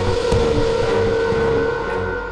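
Dramatic background score: one sustained, held drone note over a low rumble.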